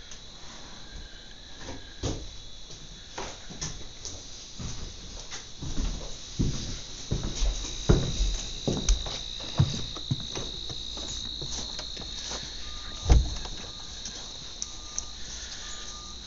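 Steady high-pitched chirring of crickets, with irregular footsteps and knocks on wooden boards; one heavier thump comes about thirteen seconds in.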